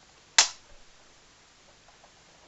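A single sharp click or snap about half a second in, dying away quickly.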